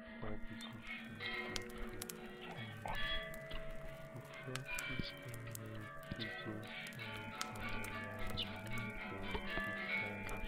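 Layered soundscape of music and voices, with several steady tones held together, a low tone that comes and goes about once a second, and scattered sharp clicks.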